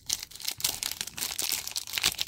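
Foil wrapper of a hockey card pack crinkling as fingers pull and work it open, a dense run of small crackles.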